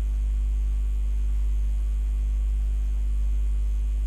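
Steady electrical mains hum: a low drone near 50 Hz with a ladder of fainter overtones above it, unchanging in pitch and level.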